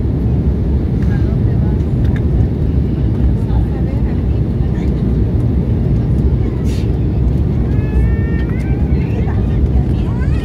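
Steady cabin noise of an Embraer 190 airliner on approach: a loud, even low roar from its two GE CF34 turbofan engines and the airflow, heard from inside the cabin. Faint voices rise briefly about eight seconds in.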